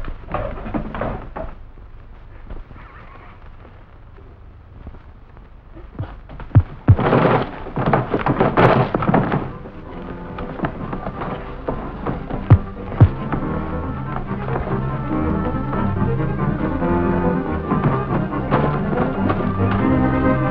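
Fistfight sound effects from an old film soundtrack: a few sharp punch thuds and a loud noisy rush of scuffling about a third of the way in, with more blows later. Dramatic orchestral score music comes in and builds through the second half.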